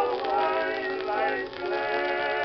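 A 1920 Columbia acoustic shellac 78 rpm record of a male-quartet ballad with orchestra playing: wavering, sustained melody lines with a short break about one and a half seconds in. The sound is dull, with no high treble.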